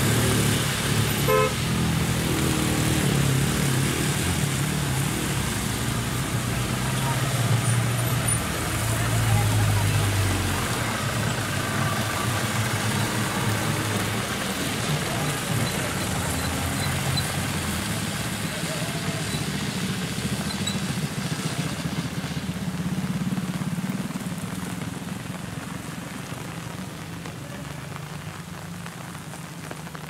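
Mixed hill traffic labouring round a wet hairpin bend: a large bus engine droning loudly for the first ten seconds or so, then smaller vehicles such as jeeps and a motorbike passing, with a horn toot, over a steady hiss of rain and wet tyres. The engine noise dies away in the last few seconds.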